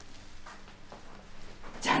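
Quiet room tone with a few faint soft ticks, then a woman starts speaking near the end.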